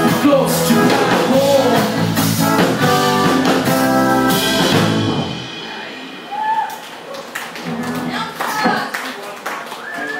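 Live ska band with horns, drums, guitar and keyboard playing the closing bars of a song, which stops abruptly about five seconds in. After that come scattered clapping and whoops from the audience.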